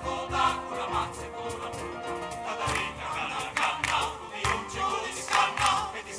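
Choir singing with a large piano ensemble and drums, sharp percussive hits marking the beat more strongly from about halfway through.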